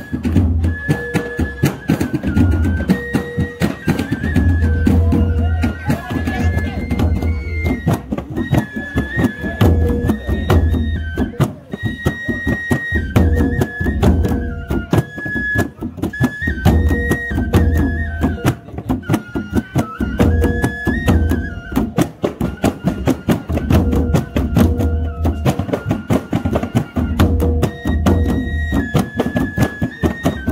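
Live traditional Maluku dance music: wooden barrel drums and frame drums beaten by hand in a steady, fast rhythm, under a high melody of held notes that steps up and down.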